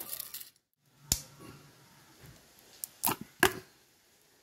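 Dry cornflakes rustling as they are dropped by hand into a glass of ice cream. After a short break comes a sharp click about a second in, then a quick run of three louder clicks and knocks near the end.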